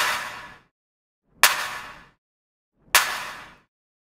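A sampled hand clap looping through a reverb send, three hits about a second and a half apart, each trailing off in a short reverb tail.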